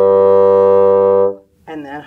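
A bassoon plays one steady low note, held for about a second and a half before stopping, blown with an open "ah" vowel shape in the mouth as used for the low register. A woman starts speaking near the end.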